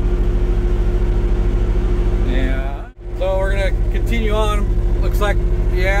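Engine of an old military extending forklift idling steadily with an even pulsing, heard from inside its cab. The sound cuts out briefly about three seconds in.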